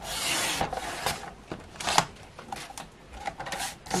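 Sliding paper trimmer cutting a sheet of printed cardstock: the cutter head scrapes down its rail through the card, followed by a few sharper scrapes and paper rustling as the sheet is handled.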